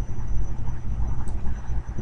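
A steady low rumble and hum of background noise, with a faint hiss above it.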